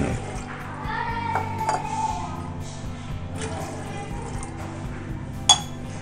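Water poured from a steel tumbler into an empty aluminium pressure cooker, splashing on the metal pot, over quiet background music. A single sharp metallic clink comes near the end.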